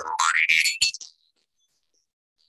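Metal jaw harp being plucked and played, a twangy drone whose overtone slides upward as the mouth shapes it, with a few sharp plucks. It stops about a second in.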